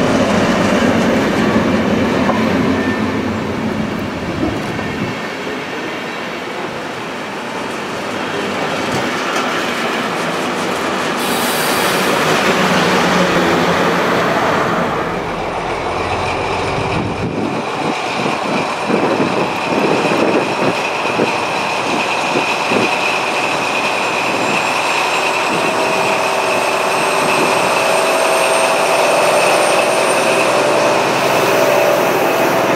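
A DB class 212 diesel-hydraulic locomotive and its train of passenger coaches running past close by: the engine running under the rumble and clatter of wheels on the rails. In the second half a quick run of clicks from the wheels over rail joints is followed by a steady high-pitched whine as the locomotive comes by.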